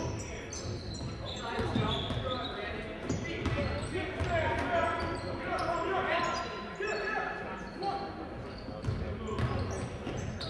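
A basketball being dribbled on a hardwood gym floor during play, with the voices and shouts of players and spectators echoing in the gym.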